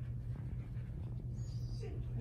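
A Siberian husky moving about on a leash, giving faint movement sounds and a brief faint high sound about one and a half seconds in, over a steady low hum.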